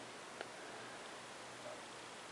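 Faint room tone, a steady low hiss, with one soft click about half a second in.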